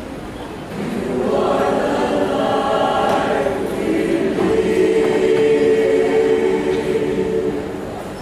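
Mixed choir of men's and women's voices singing held chords, the sound swelling about a second in and staying full.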